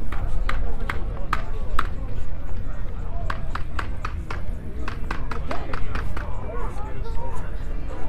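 Footsteps on a concrete walkway: sharp shoe clicks about every 0.4 s, growing denser for a few seconds as other walkers pass close by. Murmured voices of passers-by and a steady low rumble run underneath.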